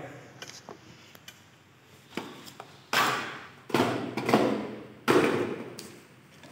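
Plastic plug-in power adapters handled and set down on a wooden tabletop: a few light taps, then three louder knocks with scraping, each fading over about half a second.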